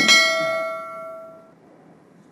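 Notification-bell "ding" sound effect of a subscribe-button animation: a single bright bell strike that rings out and fades away over about a second and a half.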